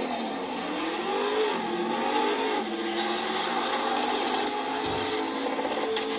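Car engine revving, its pitch rising and falling a few times, then holding steadier toward the end.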